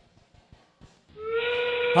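Robotics-competition endgame warning: a steam-train whistle sound played over the arena speakers as the match clock reaches 20 seconds, marking the start of the endgame. It comes in about a second in as one steady whistle that is still going at the end.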